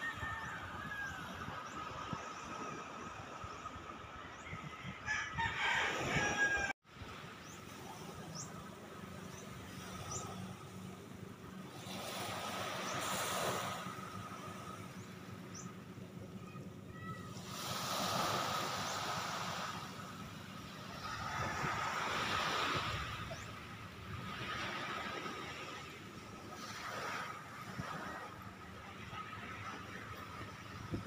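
Small waves washing onto a sandy beach, the sound swelling and fading every few seconds. A brief louder burst of noise comes about five seconds in and cuts off abruptly.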